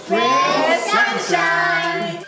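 High voices singing over a music track, the sung notes held and gliding.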